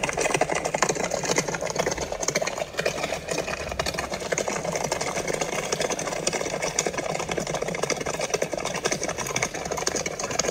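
A rapid, steady clatter of a galloping horse pulling a coach: hooves and wheels rattling together without a break.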